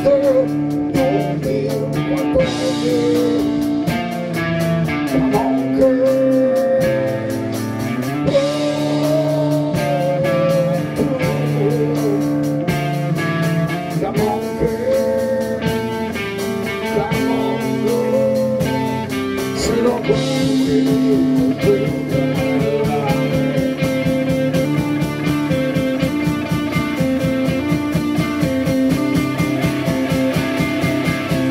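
Blues-rock band playing live: drum kit, electric guitars and bass, with a harmonica played into a vocal microphone carrying held, bending lead notes.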